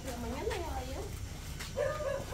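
A pet animal's short whining cries, each rising and falling in pitch, in the first second or so.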